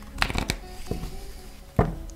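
A deck of cards being shuffled by hand: a few sharp card snaps, the loudest near the end, over soft background music.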